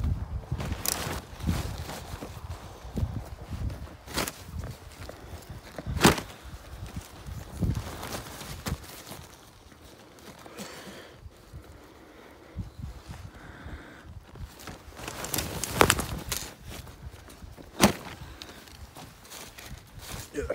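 Footsteps and rustling through grass, with about five sharp knocks from handling, quieter in the middle stretch.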